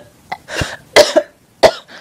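A few short, sharp coughs from a woman with a dry throat, separated by brief pauses.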